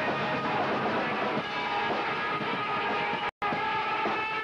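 Live post-hardcore band playing loud distorted electric guitars in a sustained, droning passage. The sound cuts out completely for an instant a little over three seconds in.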